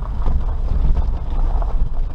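Suzuki Jimny Sierra JB43 driving along a gravel track: a loud, steady low rumble of engine and tyres, with irregular crackle from the gravel surface.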